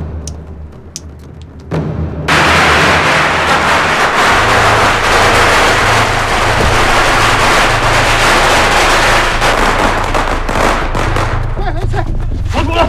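Strings of firecrackers going off in a rapid, continuous crackle of sharp pops, starting suddenly about two seconds in.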